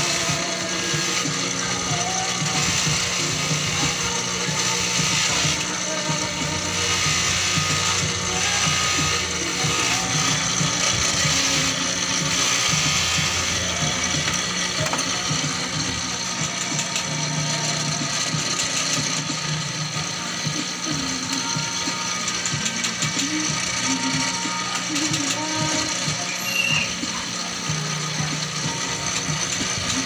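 Bench polishing motor running steadily, spinning a buffing wheel on its spindle, as a small metal piece held in pliers is polished against the wheel.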